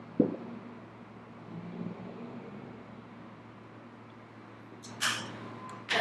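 Quiet room tone with a steady low hum. A single short thump comes just after the start, and a brief hiss about a second before the end.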